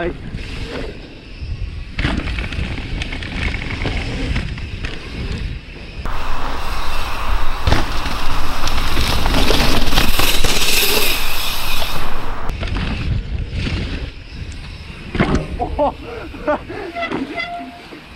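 Mountain bike ridden fast on a wet, muddy forest trail: tyres rolling over the dirt and wind rushing over the camera microphone, with knocks and rattles from the bike over bumps and landings. The rushing is loudest for several seconds in the middle, quieter at the start and end.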